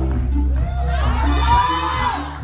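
Solo singer on a microphone holding a long, rising high note over a backing track with a heavy, steady bass. The audience cheers and whoops as the note peaks.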